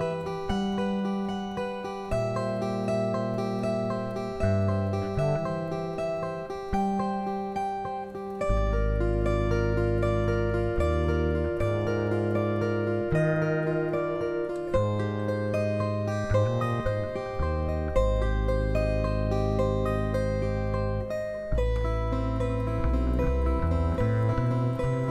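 Recorded acoustic guitar trio music: picked notes passed in quick succession from one guitar to the next, the circulation technique, with long held low notes coming in about eight seconds in.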